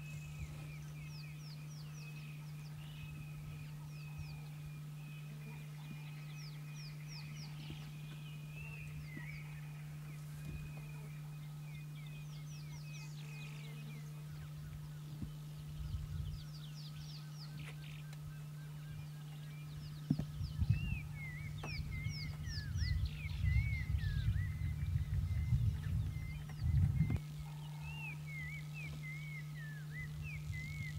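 Wild birds calling: runs of quick high chirps repeated every few seconds over a lower, wavering call, with a steady low hum underneath. Through the last third, low rumbling bumps come and go and are the loudest sound.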